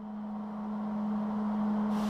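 A steady machine hum holding one low tone over a light hiss, fading in gradually from silence.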